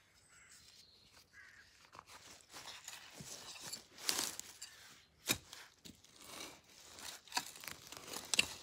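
Garden fork being pushed into soil and levered through leaf litter and strawberry plants: irregular scraping and crunching, with sharper crunches about four and five seconds in. It is quieter at first, with faint rustling as a gardening glove is pulled on.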